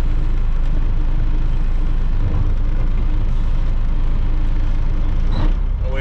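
Diesel engine of a 1984 Peterbilt 362 cabover idling steadily at low idle, its cable-driven hand throttle just pushed in, heard from inside the cab.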